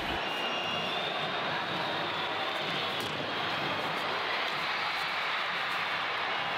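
Steady crowd noise in an ice hockey arena during play, with a faint sharp click about three seconds in.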